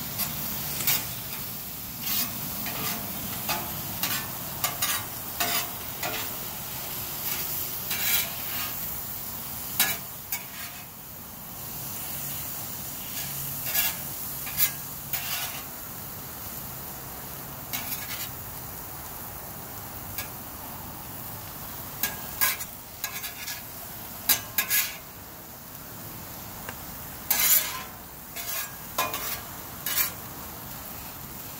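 Food sizzling on a Blackstone flat-top griddle, with a metal spatula scraping and clacking against the steel cooktop in short, irregular strokes.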